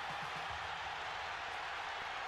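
Stadium crowd cheering in one steady, unbroken wash of noise.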